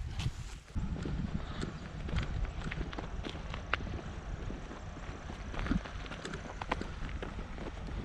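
Footsteps of people walking, with irregular knocks and rustling from a handheld camera carried along over a low rumble.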